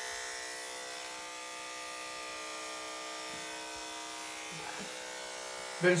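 Electric hair clippers running with a steady buzz as they cut a man's hair.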